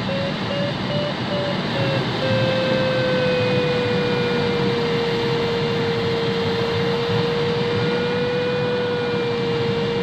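Airflow rushing around the cockpit of a Pilatus B4 glider in flight, with a steady electronic tone from the audio variometer that comes in short beeps during the first couple of seconds, then holds with a slight waver in pitch.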